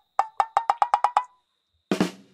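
A soundtrack percussion cue of about eight short, pitched knocks that come faster and faster, then a heavier hit with a low thud just before the end.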